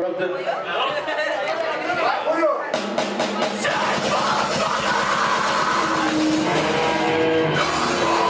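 Live grindcore band starting a song: for nearly the first three seconds a voice talks over the PA, then a quick run of drum hits brings in the full band, with distorted guitars and drums playing on steadily.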